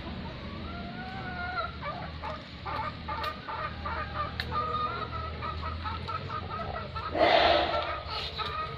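Caged lories, a black-capped lory and an ornate lorikeet, calling with thin gliding whistles and chattering notes. A loud, harsh screech comes about seven seconds in.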